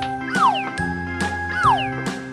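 Bright, jingly children's background music with a falling whistle-like glide, heard twice, over steady held notes.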